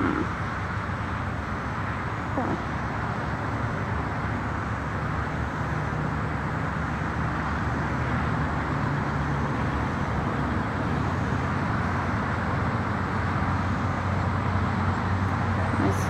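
Steady background noise of distant road traffic, an even rushing sound with a faint low hum that holds at one level throughout.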